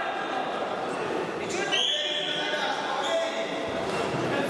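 Several voices talking and calling out, echoing in a large sports hall, with a short high-pitched call about two seconds in.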